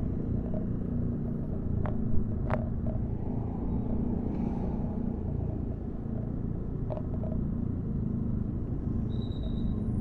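Steady low rumble of a ride through street traffic among motor scooters and cars, engine and road noise together. A few short clicks come about two seconds in and again near seven seconds.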